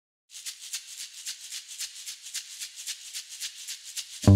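Background music opening with a shaker playing alone in a quick, steady rhythm of about four shakes a second, fairly quiet, starting a moment after a short silence.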